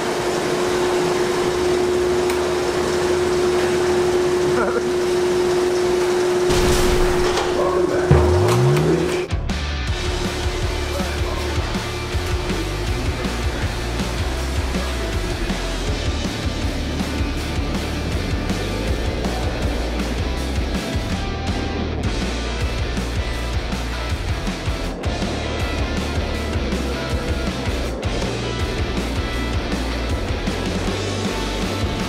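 A steady held tone over noise, ending in a rising sweep about eight seconds in, then background music with a steady beat for the rest.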